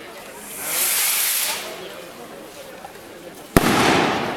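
A firework rocket going off: a hissing rush for about a second as it launches, then a single loud bang about three and a half seconds in that echoes away.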